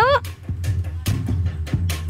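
Band music with a drum kit beat over a steady low bass line.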